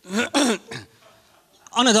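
A man clears his throat into a microphone, two short bursts close together, and about a second later begins to speak.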